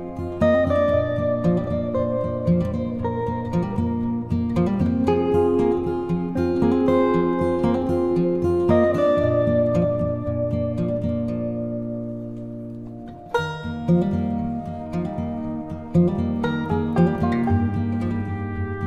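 Gentle instrumental background music of plucked-string notes. It thins out about two-thirds of the way through, then comes back in with a sharp new phrase.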